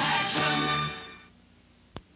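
The final held chord of a car-dealer advertising jingle, with singers and band, fading out about a second in. A single sharp click comes just before the end.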